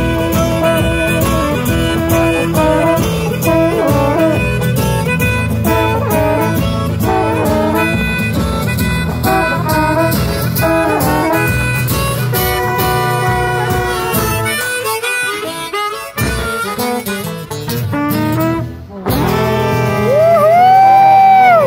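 A small live acoustic band plays a jazzy tune: saxophone, trumpet and trombone over strummed acoustic guitar and a steady washboard beat. About three-quarters of the way through, the low accompaniment drops out, and the music breaks briefly near the end.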